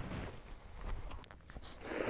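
Lion rolling on its back in dry grass, soil and antelope dung pellets: quiet rustling and scraping of its body on the dry ground, with a few small crackles.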